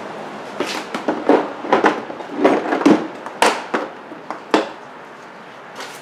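Irregular clicks, knocks and rustling of tools or parts being handled, about a dozen sharp knocks spread unevenly, the loudest a little past the middle.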